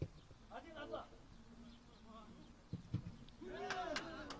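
Faint voices of footballers calling out on the pitch, with two dull thuds about three seconds in.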